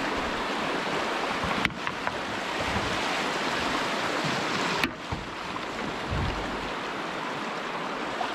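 Steady rush of moving brook water, broken by two abrupt cuts in the sound, about two and five seconds in.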